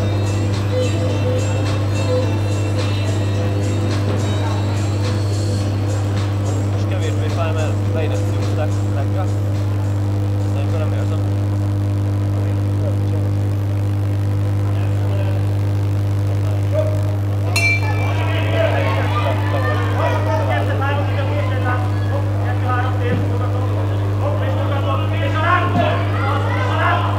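A steady low hum with faint background music; about two-thirds of the way in, a ring bell sounds once to start the kickboxing round, and voices of spectators shouting follow.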